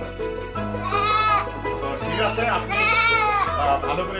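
A goat bleats twice, about a second in and again near three seconds, each call rising and falling in pitch, over background music with a steady bass line.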